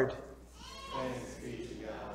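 Faint voices away from the microphone speaking the liturgical response "Thanks be to God".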